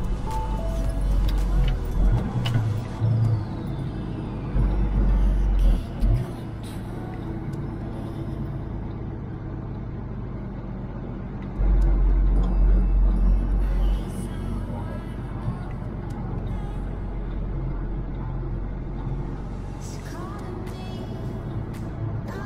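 Background music playing over the steady drone of a truck engine and road noise while driving, with deep low swells near the start, around five seconds in, and from about twelve to fourteen seconds.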